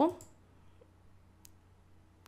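A single computer mouse click about one and a half seconds in, with near silence around it.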